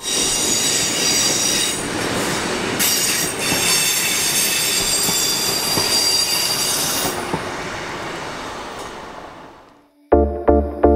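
Sprinter diesel multiple unit running past on the rails, its wheels squealing in several high-pitched tones over a rumble of wheel and track noise. The squeal dies out about seven seconds in, and the rumble fades away by the end.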